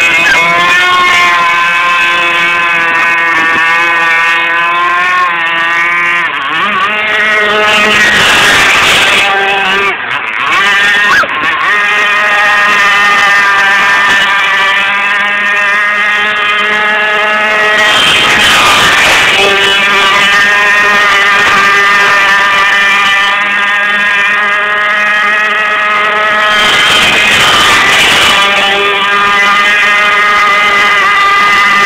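Fuji Imvac 28cc two-stroke gas marine engine of an RC speedboat running at high revs, a steady buzzing note that shifts slightly about six seconds in and dips briefly about ten seconds in. Washes of rushing noise come in near nine, nineteen and twenty-eight seconds.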